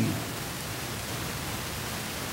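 Steady, even hiss with nothing else in it: the room tone and recording noise of the open microphone.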